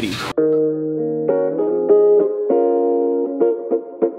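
Guitar music: a short phrase of plucked notes, each held briefly before the next, with no other sound behind it.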